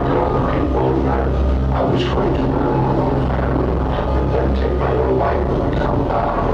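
Deathcore band playing live: loud, heavily distorted low guitars and bass holding deep sustained notes over the drums, in a continuous full-band passage.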